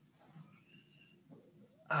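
Near quiet: a faint low background hum, with a faint brief high whistle-like sound about half a second in. A man's voice starts right at the end.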